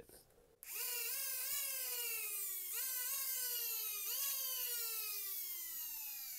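Nerf blaster flywheel cage's brushed DC motors, driven through a MOSFET board from a LiPo, spinning with a high whine. Four short bursts of power in about three and a half seconds each push the pitch up, then the motors coast down in a long falling whine.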